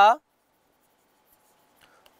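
A man's voice finishes a word, then a near-silent pause with faint stylus sounds of writing on a pen tablet.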